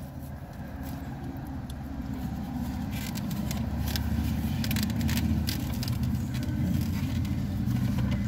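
A motor vehicle's engine rumbling, heard from inside a parked car, growing steadily louder, with a few light clicks over it.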